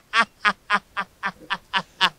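A man laughing helplessly in a long run of short, pitched "ha" bursts, about four a second, growing fainter as the laugh goes on.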